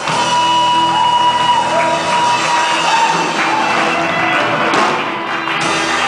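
Live gospel worship band playing a song: electric guitars, bass guitar and drum kit, with a woman singing into a microphone.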